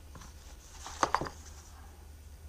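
A quick cluster of three or four light clicks and taps about a second in as a set of small adjustable parallels is handled and lifted from its case, over a steady low hum.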